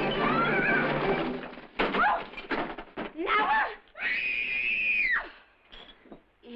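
Overlapping shouting and cries in a scuffle, then a long high-pitched scream held for about a second, starting about four seconds in.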